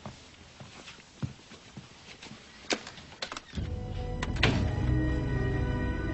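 Sound effect of a homemade spirit-contacting box being cranked into life. A few faint clicks come first, then about three and a half seconds in a loud low electric hum with steady overtones starts and holds, as the machine powers up.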